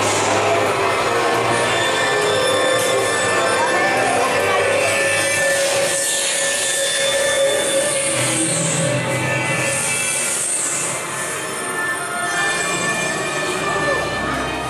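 Dark-ride show music plays continuously through the ride's sound system. A rushing hiss swells in from about six seconds in and fades out around eleven seconds.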